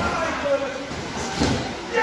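Wrestlers' bodies hitting the ring mat: a sharp thud at the start and a heavier, deeper thud about a second and a half in, with short shouts from people around the ring.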